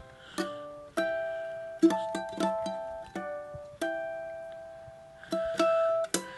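Enya ukulele played in natural harmonics, one hand sounding two notes at once: a slow phrase of clear, bell-like plucked notes, each left to ring and fade, with one long note dying away before a last pair of plucks near the end.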